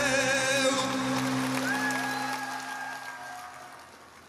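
Orchestra holding the final chord of a ballad under a singer. A vibrato melody line drops out about a second in, and the sustained chord then slowly fades away.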